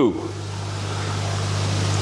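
Steady low hum under an even hiss: the background of a koi pond's running pumps and aerated, churning water.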